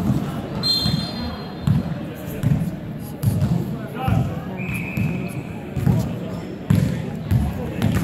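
A basketball being dribbled on a hardwood court in an echoing gym, bouncing about once every 0.8 seconds.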